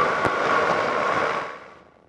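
Steady cockpit noise of a flex-wing microlight, engine and wind hiss picked up through the pilot's headset microphone, which fades away to near silence near the end.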